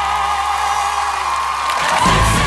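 A woman singing, holding the long final note of the song with vibrato over a sustained low accompaniment, with audience cheering and applause rising beneath it. The note and accompaniment break off near the end.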